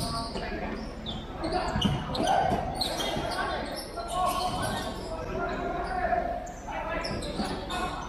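Futsal game on an indoor court: players' shouts and calls echoing through a large hall, with the sharp thud of the ball being kicked now and then.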